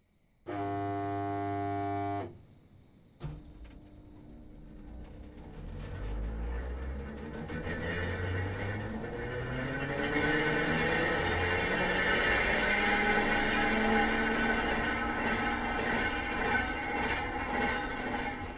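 Train sound effects: a horn blast lasting under two seconds, a single clank about three seconds in, then a freight train getting under way. Its rumble and squealing tones rise steadily in loudness as it picks up speed.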